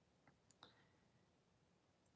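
Near silence, with two faint short clicks about half a second in.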